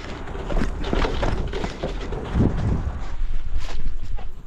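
A bicycle ridden over bumpy dirt and grass: a steady rumble of the tyres with rattling from the bike, and wind on the microphone.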